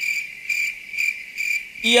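A cricket chirping steadily: a high, even chirp repeating about four times a second.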